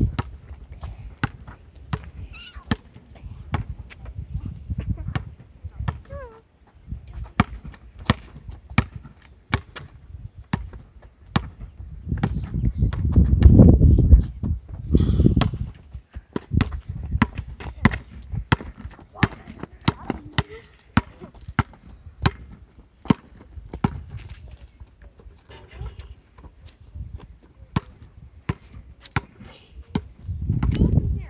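A basketball bouncing on an asphalt court: repeated sharp slaps of dribbling and bounces, irregularly spaced. A loud low rumble swells about twelve seconds in and lasts a few seconds.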